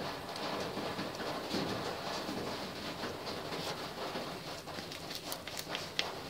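Light, scattered tapping and scraping of a small plastic cup against a wooden spatula over a stainless steel bowl as sesame seeds are knocked out onto ground pork, with a few sharper clicks near the end.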